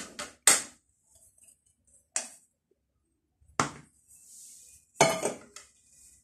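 Stainless steel bowls and kitchen utensils clinking and knocking as they are handled on a table, about five separate knocks with quiet gaps between them.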